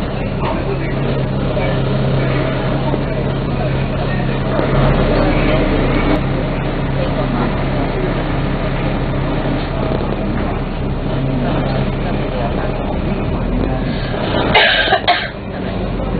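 Dennis Trident double-decker bus heard from inside while under way: a steady engine drone with a constant low hum. A short loud burst cuts in near the end.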